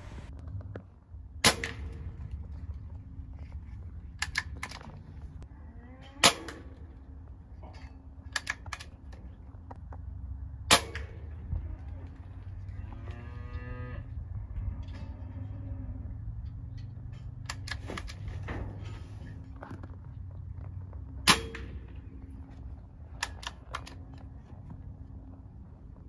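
Four shots from a Benjamin Marauder PCP air rifle, each a sharp crack, several seconds apart, with quieter metallic clicks between them as the bolt is cycled. Around the middle a cow moos briefly, over a steady low hum.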